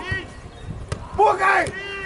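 Men shouting across a football pitch: a short call at the start and one long, loud call near the end. A single sharp thud of the ball being kicked comes just under a second in.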